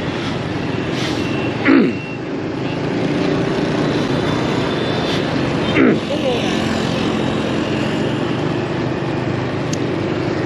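Steady motorbike and street-traffic noise heard from a vehicle on the move: a constant engine hum and road noise, with two brief louder sounds about two and six seconds in.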